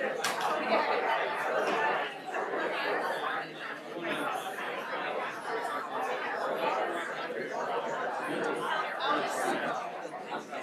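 Audience chatter: many people talking at once in a large hall, a continuous murmur with no single voice standing out.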